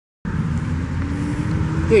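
Honda VTX1300 Retro's V-twin engine idling steadily through its Cobra slash-cut exhaust, with a faint tone slowly rising in pitch.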